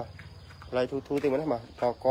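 A man's voice speaking in two short bursts, over a steady high-pitched insect trill, likely crickets.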